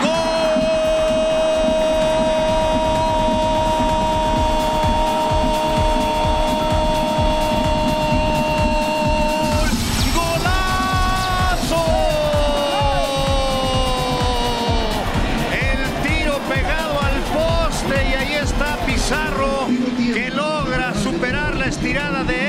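A football commentator's drawn-out goal cry, one high note held at a steady pitch for about ten seconds, then breaking and sliding down in pitch. Excited shouted commentary with rising and falling pitch follows, over steady stadium crowd noise.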